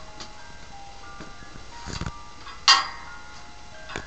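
A doll's battery-powered lullaby tune playing a high-pitched melody of thin, held electronic notes. A knock sounds just before the two-second mark, and a louder, sharp one follows about two and a half seconds in.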